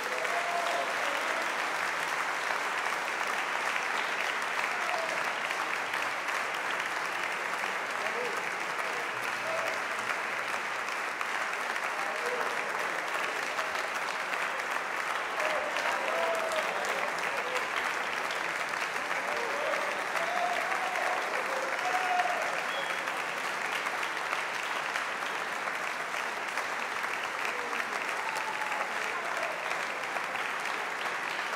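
Audience applauding steadily, with voices calling out from the crowd now and then.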